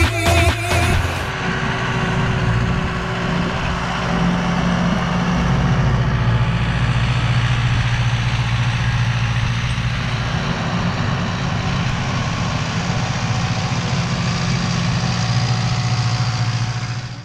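Zetor Forterra 115 tractor's four-cylinder diesel engine running steadily under load while pulling a disc harrow. Dance music cuts out about a second in.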